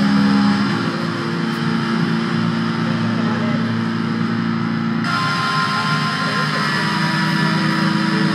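Live punk rock band's distorted electric guitar and bass holding loud, steady chords as the song ends, with a brighter hiss joining about five seconds in.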